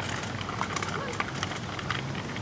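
Irregular scuffing and clicking of footsteps and a small child's bicycle with training wheels being wheeled over gritty asphalt.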